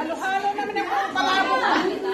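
People talking, several voices chattering at once.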